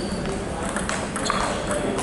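Table tennis rally: the celluloid-type ball clicking sharply off the paddles and table, several hits about a second or less apart.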